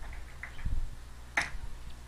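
A few computer keyboard keystrokes: faint ticks, a brief low thump a little past a third of the way through, and one sharp key click about two-thirds of the way in.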